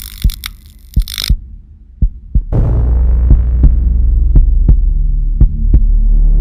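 Film-trailer sound design: a heartbeat-like sound effect of low thumps, a few a second, with a burst of static hiss in the first second. About two and a half seconds in, a loud low drone comes in under the continuing thumps.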